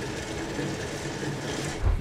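Vermeer tracked rock wheel trencher cutting into gravel: steady mechanical grinding and rattling over the running engine, with a low thump near the end.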